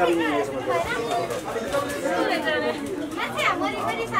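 Several people talking at once, indistinct overlapping voices.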